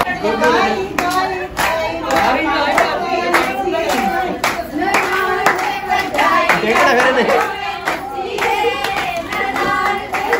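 Group of women clapping in a steady rhythm for Punjabi giddha, with voices singing along over the claps.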